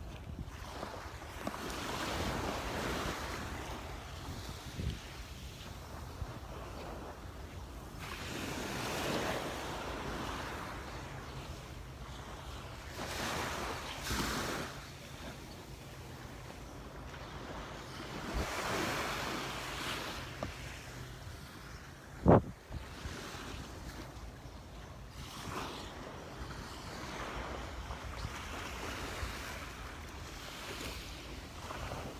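Small waves washing up on a sandy shore, swelling every few seconds, with wind buffeting the microphone. One sharp thump about three-quarters of the way through.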